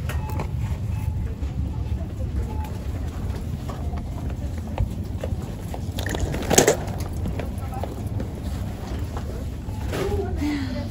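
Grocery-store background of a steady low rumble and faint voices, with a sharp clatter at the wire shopping cart about six and a half seconds in, as when cans are dropped into it.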